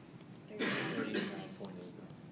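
A person's cough about half a second in, followed by faint murmuring voices.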